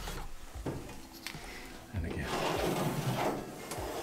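A pen drawing a line on a van's bare steel inner panel along a straight edge: faint scratching with a few light taps in the first half, then a steadier rubbing scratch in the second half.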